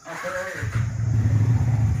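An engine running steadily and loud, coming in about half a second in after a few spoken words.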